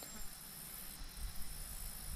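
Faint, steady background drone of summer insects, with a low rumble growing near the end.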